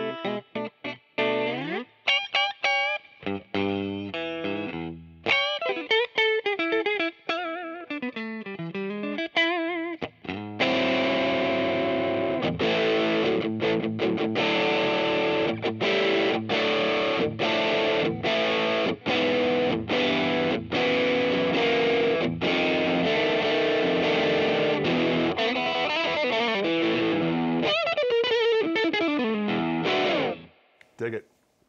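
Fender Custom Shop 1960 Stratocaster Relic electric guitar played on its middle pickup (selector position three) through an amp. For about the first ten seconds it plays single-note lead lines with string bends and vibrato. Then it plays a long stretch of dense strummed chords broken by short gaps, and returns to bent single notes near the end.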